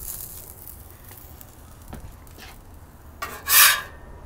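A steel spatula scraping across a flat-top griddle as it is slid under a sandwich: one scrape lasting about half a second near the end, over a faint low hum.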